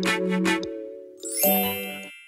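Short intro jingle of bell-like chiming notes struck in quick succession, ending in one last bright chime about one and a half seconds in that rings and fades away.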